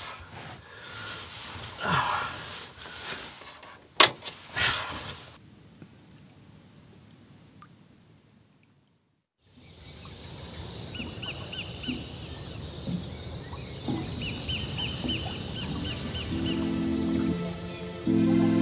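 Bedding and clothes rustling as someone settles into a bunk in a small boat cabin, with one sharp click about four seconds in. After a brief silence comes steady outdoor background noise, with a bird giving two quick runs of high chirps.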